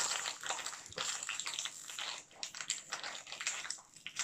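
Foil wrapper crinkling and rustling in irregular crackles as fingers work at a small foil packet that is hard to tear open.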